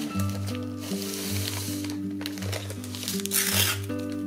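Clear plastic bag crinkling as a paper pad is slid into it and handled, with a burst about a second in and a louder one near the end. Gentle guitar background music plays throughout.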